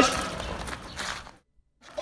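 Faint, even background noise trailing off after speech, dropping out to complete silence for a moment about a second and a half in.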